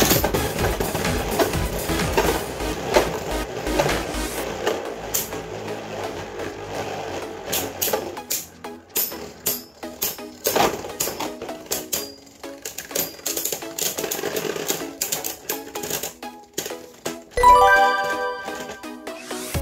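Two Beyblade Burst tops, Gatling Dragon and Astral Spriggan, spinning in a plastic stadium and striking each other with repeated sharp clacks, over background music.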